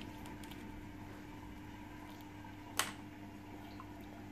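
Small plastic clicks from a reagent dropper bottle being handled, with one sharper click a little under three seconds in. A faint steady hum runs underneath.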